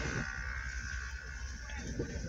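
Quiet room tone: a steady low hum with a faint, steady high buzz, and no distinct event.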